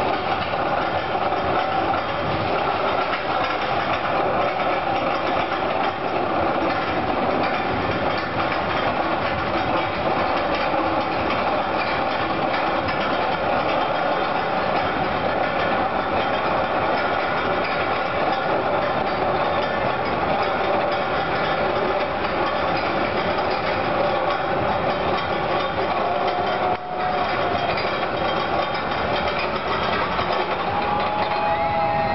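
Steady mechanical rumble with a faint droning hum, constant throughout, dropping out for a moment near the end.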